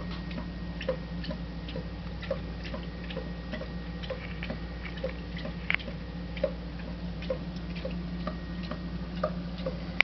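Soft, evenly spaced ticking, about three ticks every two seconds, over a steady low hum, with scattered light clicks in between.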